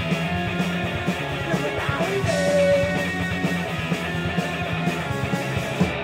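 Live rock band playing loudly: electric guitars, bass and drums in a continuous, driving full-band passage.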